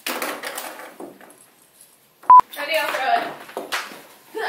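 A short, loud beep at one steady pitch a little past halfway, of the kind used to bleep out a word, set among talking voices.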